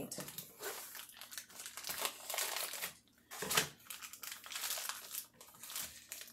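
Plastic bag of thawed frozen corn being handled: the plastic crinkles and rustles in irregular crackles, with a brief pause about halfway through.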